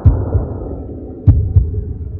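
Heartbeat-like pairs of deep thumps, twice, about 1.3 s apart, over a steady low rumble.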